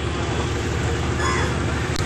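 Steady outdoor background noise with a low rumble, and a faint distant voice briefly a little over a second in.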